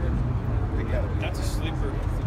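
Faint background voices of people talking, over a steady low rumble.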